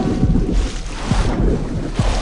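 Horror-film trailer sound design: a deep rumble with rushing, wind-like noise and a few low thuds.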